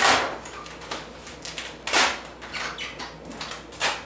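Large sheet of printed vinyl wrap film rustling and crackling as it is lifted and repositioned on a refrigerator door, with hands rubbing over the film; three louder swishes come near the start, about two seconds in, and near the end.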